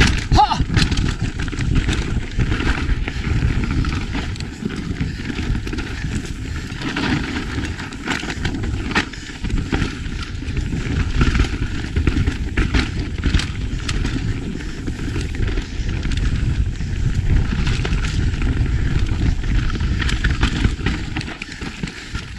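Wind rushing over the camera microphone and mountain bike tyres rumbling over dry dirt and rock on a fast trail descent, with scattered clicks and knocks from the bike rattling over bumps.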